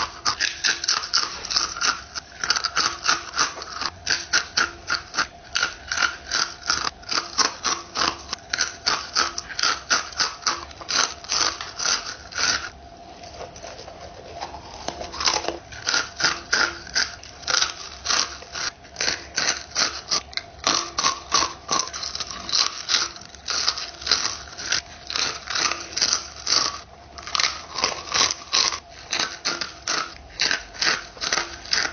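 Rapid, continuous crunching of Blue Takis rolled corn tortilla chips being bitten and chewed close to the microphone, about four crisp crunches a second, with a brief lull about halfway through.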